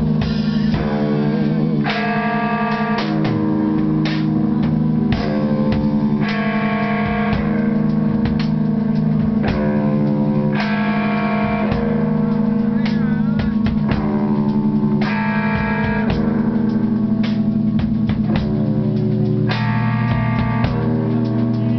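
A band playing loud live music, somewhere between free jazz and power violence. Long held, distorted notes change about once a second over a steady low drone, with scattered drum hits.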